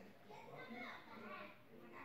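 Faint voices talking in the background, low and indistinct.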